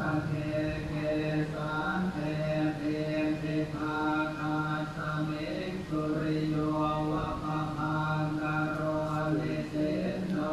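A recorded Buddhist chant playing: a low voice holding long, steady notes that step gently in pitch.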